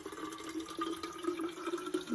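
Water pouring from a countertop water-jug dispenser's spigot into an insulated water bottle, a steady stream whose pitch rises slowly as the bottle fills.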